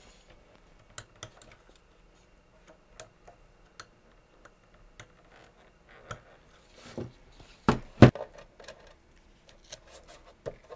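Handling noise from assembling a bench power supply: scattered light clicks and taps as hands work wiring and a temperature sensor inside its open metal case, with two sharper knocks close together about eight seconds in.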